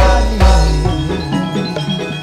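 Gamelan music: bronze metallophones ringing out a melody over the ensemble, with two deep booming strokes in the first half second.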